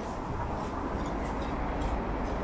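Steady rumble of city road traffic, with footsteps crunching on snow about twice a second.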